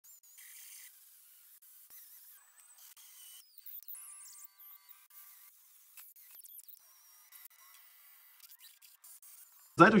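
Near silence apart from very faint background music with a few held notes about the middle.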